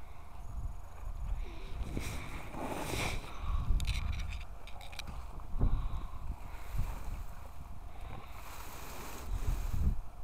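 Low wind rumble on the microphone, with bursts of rustling and scraping from dry pulled grass and weeds being handled in a wheelbarrow. The rustling is loudest a couple of seconds in and again near the end, as a rake works over the pile.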